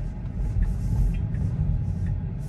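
Low, steady road rumble inside a Tesla's cabin, heard as the electric car's tyres roll slowly over pavement. No engine note can be heard.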